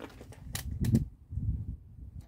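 A few sharp plastic clicks around the middle, over low rumbling handling noise, as a handheld digital multimeter and a laser tachometer are picked at and set up.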